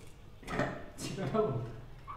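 People's voices and laughter, with two short sharp clicks or knocks about half a second and one second in.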